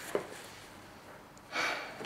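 A man's quick, audible intake of breath near the end, after a single faint click just after the start.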